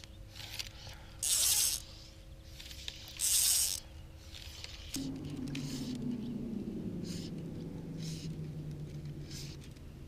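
Fly line swishing twice through the air and the rod guides as it is cast and stripped. An electric bow-mounted trolling motor hums, and about five seconds in it whirs louder, its pitch gliding down and then holding steady.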